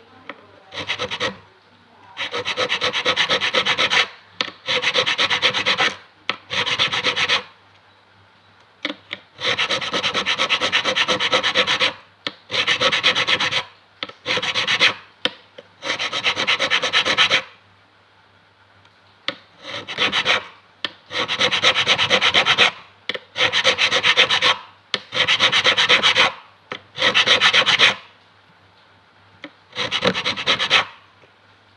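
Fret file scraping back and forth over the metal frets of an acoustic guitar in repeated bouts of about one to two seconds, with short pauses between them.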